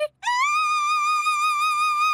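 A cartoon character's voice swoops up into one long high sung note and holds it with a slight wobble.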